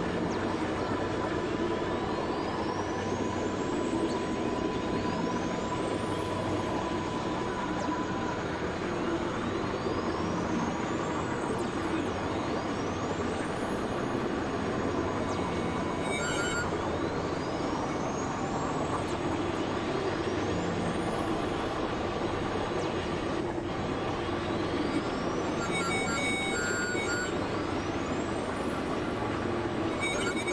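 Experimental electronic noise music: a dense, steady droning wash with a rising whistle-like sweep repeating about every four seconds. A steady high tone sounds over the first eight seconds, and short clusters of bleeps come in about halfway and again near the end.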